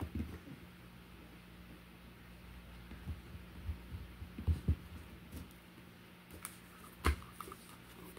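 Quiet room with a low steady hum; a few soft thumps around the middle and a couple of sharp clicks near the end as a deck of tarot cards is handled on the table.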